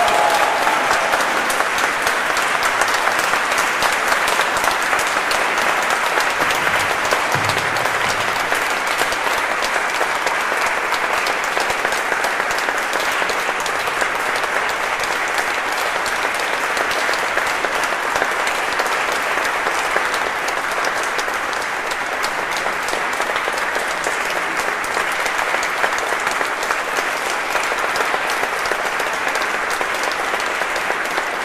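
Audience applauding steadily, a dense crowd of hand claps that goes on without a break.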